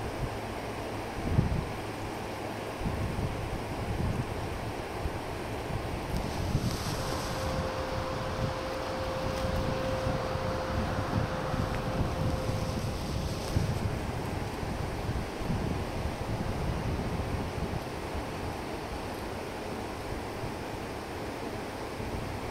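Wind buffeting the microphone, giving irregular low rumbles over a steady outdoor hiss. A faint steady tone sounds for several seconds in the middle.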